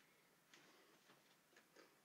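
Near silence: room tone with a few very faint ticks.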